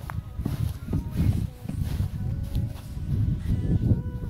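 Wind buffeting a phone microphone in uneven low gusts, with scattered thuds and rustling from running through grass.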